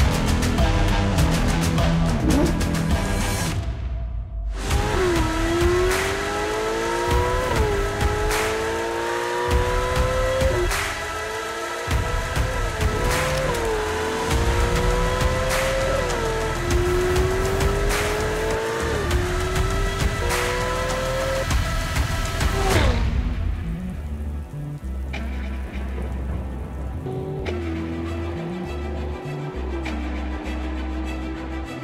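A sports car engine accelerating hard through the gears over background music. Its pitch climbs and then drops back at each upshift, several times in a row, and the engine fades out a few seconds before the end, leaving only the music.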